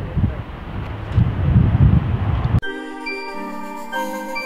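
Wind rumbling on the microphone with outdoor ambience, cut off suddenly about two and a half seconds in by background music of sustained bell-like pitched notes.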